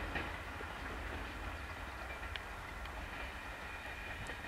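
Passenger train receding down the line, its coaches' wheels running on the rails with a steady low rumble and a few sharp clicks, slowly growing fainter.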